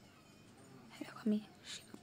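Quiet room tone for about a second, then a woman's soft, half-whispered voice in a few short bursts in the second half.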